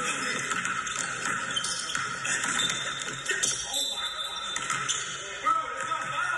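Game sound of a one-on-one basketball game in a gym: a ball being dribbled, with faint voices in the background.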